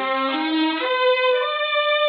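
A dramatic music bridge on bowed strings, the notes climbing in a few steps and ending on a held note.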